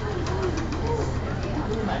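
Steady low hum of a vibration plate fitness machine running, with a person's voice warbling and wobbling as they stand on the shaking platform.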